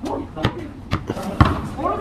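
A basketball bouncing on a hard outdoor court, dribbled: four bounces about half a second apart, the last the loudest. Voices come in near the end.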